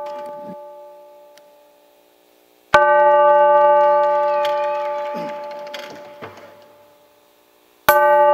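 Bell-like struck chords from a backing track, played through stage speakers. The ringing of one chord fades out early on; a new chord is struck about three seconds in and dies away over about four seconds, and another is struck near the end.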